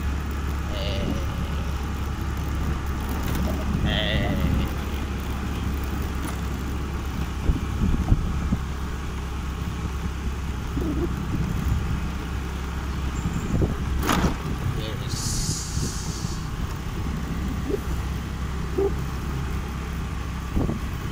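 Steady low rumble of wind buffeting the phone's microphone, mixed with the running engine of a motorbike being ridden. A sharp knock comes about 8 s in and another about 14 s in.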